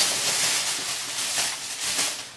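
Rustling and handling noise as gift items are rummaged through and picked up: a continuous hissing rush with two light knocks in the second half.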